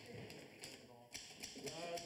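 Manual typewriter being typed on: a run of irregular key strikes clacking.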